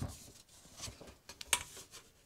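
Faint rustles and light clicks of a picture card and a metal baking tray being handled, with one sharper click about one and a half seconds in.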